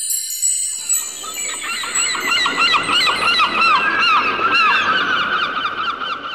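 A flock of birds calling over a steady background noise, in quick repeated calls several times a second. High chime-like musical tones fade out in the first second.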